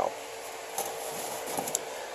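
Quiet workshop room tone: a steady low hum with a couple of faint light clicks.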